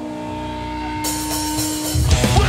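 A steady held electric guitar note ringing through the stage amplifiers, with a high hiss joining about halfway, in the pause before a hardcore band starts its next song.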